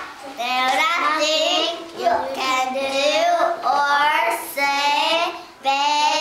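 Two young girls singing a song together unaccompanied, in phrases broken by short breaths.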